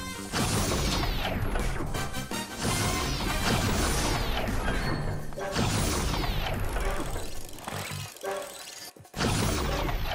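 Cartoon action score with repeated crashing impact sound effects: about five hits spaced a second or two apart, each with a falling sweep after it. The sound briefly drops out near the end.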